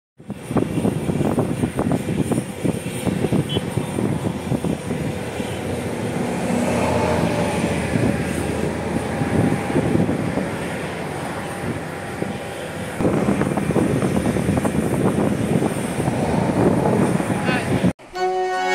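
Outdoor road ambience: motor traffic passing, with a loud, uneven rumble and a sudden change in the sound about thirteen seconds in.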